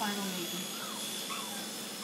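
Electric dog grooming clippers running with a steady buzzing hum during a touch-up trim on an Airedale terrier puppy, with faint voices in the background.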